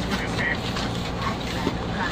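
Steady low hum with faint voices in the background.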